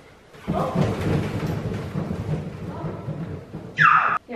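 Background music starting about half a second in, heavy with low drum-like pulses. Near the end a brief, loud high sound falls sharply in pitch.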